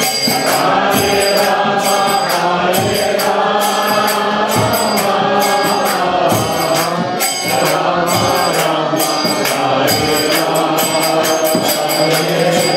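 Kirtan: voices chanting a mantra to a harmonium, with small hand cymbals (kartals) struck in a steady beat about twice a second.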